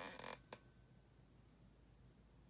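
Near silence: room tone, with a brief soft rustle at the start and a single faint click about half a second in.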